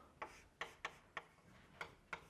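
Chalk clicking against a blackboard as characters are written: about five faint, sharp taps, unevenly spaced.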